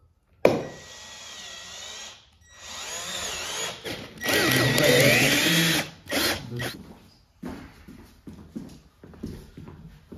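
Cordless drill with a twist bit boring into a wooden parquet floor, in several runs with the motor's pitch rising and falling under the trigger and the load; the longest and loudest run comes about four seconds in and lasts nearly two seconds, followed by a few short bursts and then fainter, scattered sounds.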